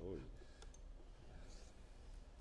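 A few faint, short clicks over quiet room tone.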